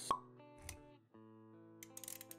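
Intro music with steady held notes, mixed with sound effects: a sharp short pop right at the start, a soft low thud a little past half a second in, and a flurry of clicks near the end.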